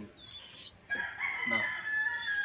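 A rooster crowing: one long, drawn-out call starting about halfway through.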